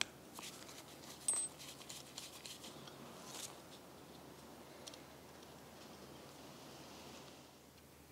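Faint small clicks and scrapes of metal as a screwdriver undoes the brass idle jet in a Weber DCOE carburettor and the jet is then lifted out by hand, the sharpest click about a second in.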